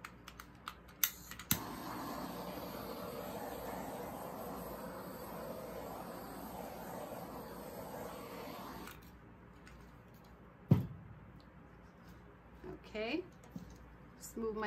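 A torch clicked to ignite, then hissing steadily for about seven seconds as its flame is passed over a wet acrylic pour to bring up cells, then shut off. A single sharp knock follows a couple of seconds later.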